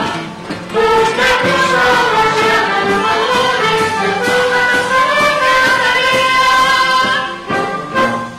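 A carnival bailinho band of guitars, violins and brass playing an instrumental passage, with a short dip just under a second in. The music stops on a final accented chord at the very end.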